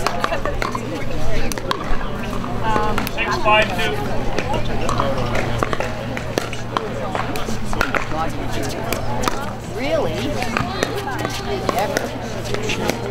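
Nearby voices chatting over the sharp pops of pickleball paddles hitting balls on the surrounding courts, with a steady low hum underneath.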